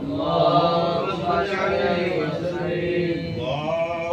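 Men's voices chanting Islamic dhikr in Arabic, in long, drawn-out melodic phrases.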